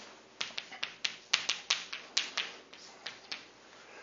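Chalk clicking and tapping against a blackboard while an equation is written: an irregular run of short, sharp clicks that stops shortly before the end.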